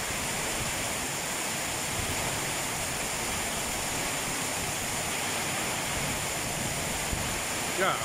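Heavy rain pouring down onto a wet street, a steady, even hiss of water.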